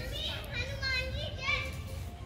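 Children's voices calling and shouting in high, wavering tones, over a low rumble.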